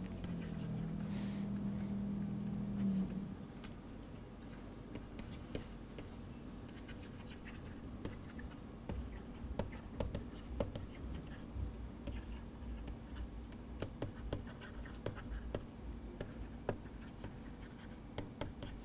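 Plastic stylus writing on a tablet computer screen: soft scratching and irregular small taps as words are handwritten. A steady low hum is heard until about three seconds in, then stops.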